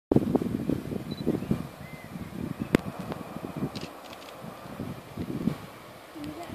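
Wind buffeting the microphone in uneven gusts, strongest at first and easing off, with one sharp click a little before the middle and a few faint high chirps.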